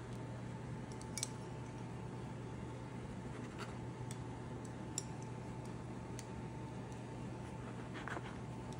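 Steady low hum with a faint steady higher tone under it, and a few light clicks and taps scattered through, about one every second or so in the middle stretch.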